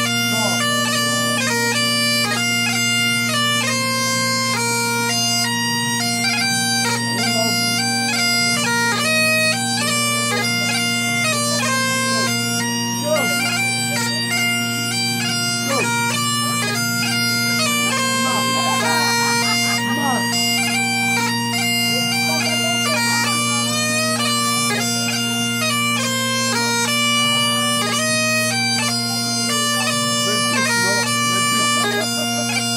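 Bagpipes playing a tune: steady unbroken drones under a chanter melody stepping from note to note.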